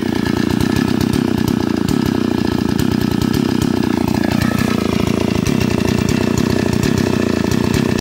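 Stihl MS 381 chainsaw's 72 cc two-stroke engine running steadily at idle, the chain not cutting.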